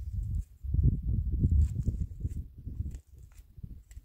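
Irregular low rumble of wind buffeting the microphone, swelling about a second in and dying down near the end, with a few faint clicks of a knife cutting raw chicken.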